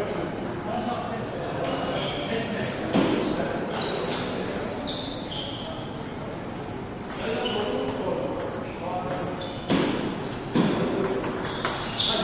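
Table tennis balls clicking off bats and tables, irregular ticks from several tables in a hall, with a few louder knocks in the last few seconds as a rally starts at the nearest table. Voices murmur underneath.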